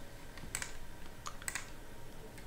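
Three faint, sharp clicks of a computer mouse, a little under a second apart, as on-screen boxes are clicked in the software.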